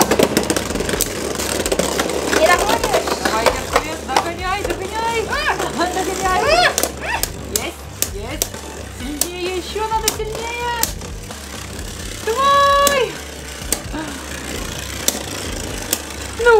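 Two Beyblade Burst spinning tops, Dead Phoenix and Archer Hercules, spinning in a plastic stadium and knocking against each other with repeated sharp clicks, mixed with background music and wordless vocal sounds.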